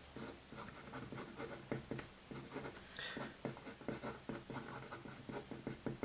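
Marker pen writing on paper: a run of short, faint scratchy strokes as letters are drawn.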